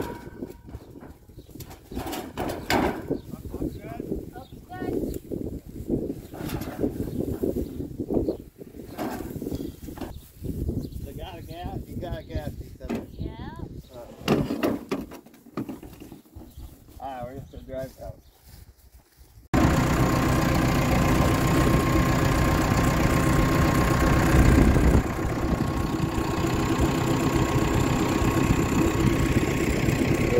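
Wind buffeting the microphone with scattered knocks and faint voices, then, after a sudden cut about two-thirds of the way through, a tractor engine running steadily.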